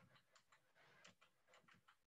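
Near silence with a few faint, irregular clicks of computer keyboard keys as a word is typed.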